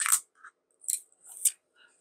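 Thin plastic protective film being peeled off a power bank's plastic front: short, sharp crinkly crackles, a loud one at the start and two more about a second and a second and a half in.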